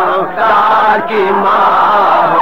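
A man chanting a marsiya, an Urdu elegy, in a drawn-out melodic line: long held notes that waver and slide in pitch, with no clear words.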